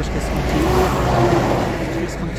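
A car passing on the road, its engine and tyre noise swelling about half a second in and fading near the end.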